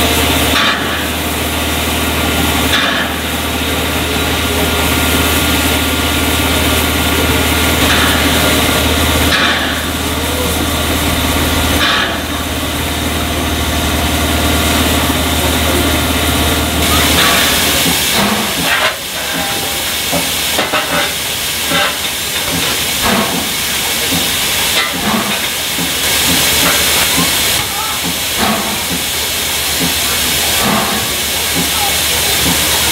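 A2 Pacific steam locomotive standing at a platform, steam hissing steadily from it. A low steady drone runs beneath the hiss and drops away a little over halfway through.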